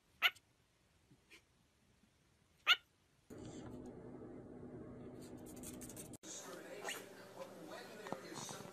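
Cockatiel giving two short, sharp chirps about two and a half seconds apart, followed by a steady low background hum.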